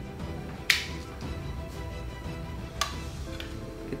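Two sharp metallic clicks about two seconds apart, metal kitchen tongs being snapped, over soft background music.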